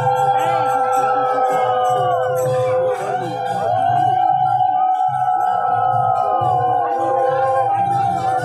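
Several conch shells (shankha) blown together in long, overlapping blasts that bend in pitch at their starts and ends, one held steady on a low note, over a low pulsing throb.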